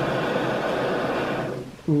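Small gas canister camp stove burner hissing steadily under a pot of boiling water, then shut off, the hiss dying away about 1.7 seconds in.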